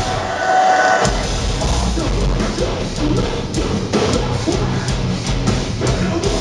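A metalcore band plays live through a club PA, with heavy distorted guitars and a drum kit, heard from the crowd. The bottom end cuts out briefly just under a second in, and then the full band crashes back in.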